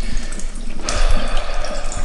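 Kitchen mixer tap running into a sink while potatoes are rinsed and rubbed by hand under the stream, the water growing louder about a second in.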